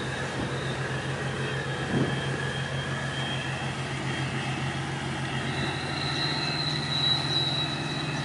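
Steady engine drone with an evenly pulsing low hum and thin, steady high-pitched whines above it.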